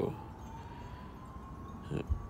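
A faint, distant siren: one thin tone slowly rising in pitch.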